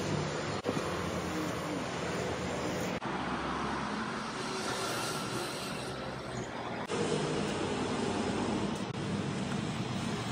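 Street traffic noise with a motorbike passing: a steady rush of road noise that changes abruptly a few times where short takes are cut together.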